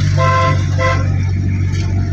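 A car horn sounds twice, a toot of about half a second then a short one, over the steady low drone of an engine heard from inside a vehicle's cabin.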